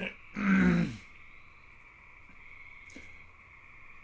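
A man's short grunt, about half a second long, with its pitch falling away at the end. After it there is only a faint steady high tone, with a small click about three seconds in.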